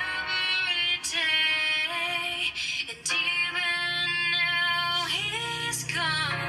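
A young woman's solo voice singing a slow ballad in long held phrases, with a rising note near the end, over soft backing music.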